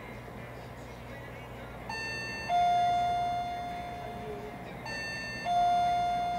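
A two-note ding-dong chime, a short higher note followed by a louder lower note that rings and slowly fades, sounding twice about three seconds apart.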